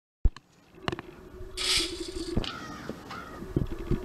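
Dry cat kibble poured into a stainless steel bowl, a brief rattling rush, amid knocks and scrapes on a wooden deck.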